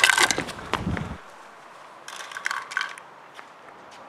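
Beyblade spinning tops clattering and scraping against each other and the plastic stadium in a run of quick clicks that dies away after about a second. A few lighter clicks follow about two to three seconds in.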